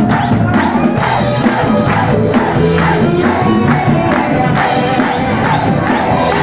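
Live rock band playing loud: a steady drum-kit beat under electric guitar and bass.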